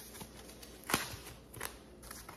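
A translucent packaging sleeve being handled while a wallet is worked out of it: light rustling with a sharp crinkle about a second in and a smaller one near the end.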